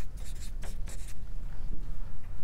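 Writing on paper: quick strokes of a marker on chart paper and pens on notepaper, clustered in the first second, over a steady low room hum.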